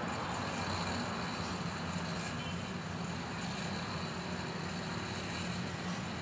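Steady low engine hum over outdoor background noise, without distinct events.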